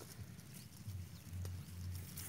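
Faint knocks of a T-handle socket wrench working the bolts on a hand tractor's muddy gearbox, twice, over a low steady rumble.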